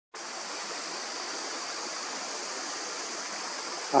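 Steady, even outdoor rushing hiss with no distinct sounds in it, a little brighter in the high register.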